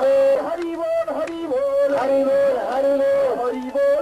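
Kirtan: a man's voice chanting a slow melody in long held notes, sliding between pitches.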